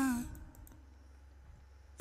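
The end of a held sung vocal note from the playback, falling in pitch as it stops, then a few faint computer mouse clicks over a low electrical hum.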